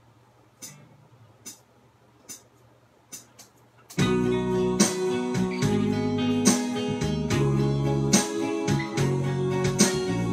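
Acoustic guitar: a few faint clicks, then about four seconds in the guitar starts strumming chords loudly as a song's intro.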